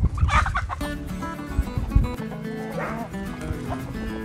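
A chicken gives a loud, harsh squawk lasting about half a second near the start, with fainter chicken calls about three seconds in, over guitar background music.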